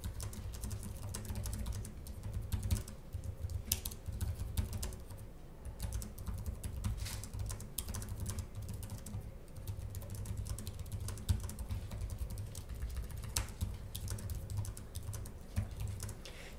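Typing on the keyboard of a 2023 Lenovo ThinkPad X13 laptop, whose keys have 1.5 mm of travel: a continuous, irregular run of quick key clicks with a steady low hum beneath.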